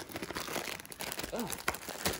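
Plastic sleeve crinkling and crackling in short irregular bursts as it is worked out of a cardboard kit box, where it is stuck.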